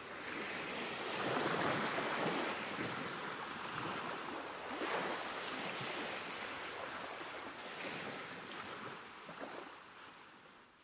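Ocean-wave sound effect: a rushing surf-like noise that swells and falls every few seconds, fading out toward the end.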